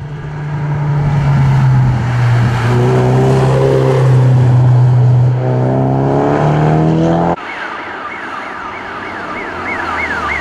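A rally car's engine running hard, its revs rising in sweeps. After about seven seconds it cuts off abruptly to a siren wailing up and down about twice a second, from a white BMW 1 Series with roof lights driving the stage.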